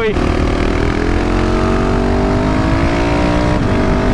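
KTM 690 SMC R single-cylinder engine pulling under throttle while riding, its pitch rising steadily for about three and a half seconds before breaking off near the end, with wind rushing over the microphone.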